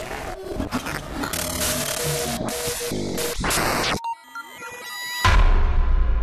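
Electronic intro sound design: choppy, glitchy noise stutters, then about four seconds in a sudden drop to sparse computer bleeps and sweeping tones, followed a second later by a heavy deep bass hit that holds on.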